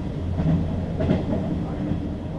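A train running on the rails, with a steady low rumble.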